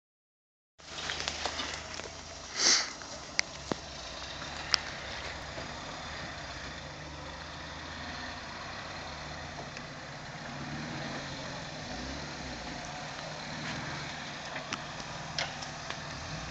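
Small off-road 4x4's engine running steadily at low revs as it crawls over a rocky trail. A short loud burst comes about two and a half seconds in, and a few sharp clicks and knocks follow over the next couple of seconds.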